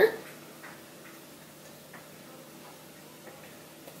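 A few faint, light ticks from a ring of metal measuring spoons held over a stainless steel mixing bowl while a tablespoon of vegetable oil is poured; otherwise a quiet room.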